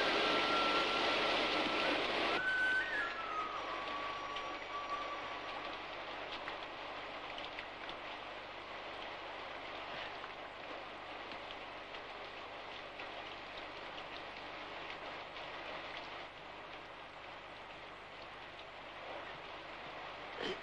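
Steady heavy rain falling, loudest in the first couple of seconds and then easing a little. A few held notes of the score fade out in the first few seconds.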